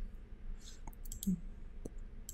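A few sharp computer mouse clicks in the second half, made while picking a colour in a software dialog.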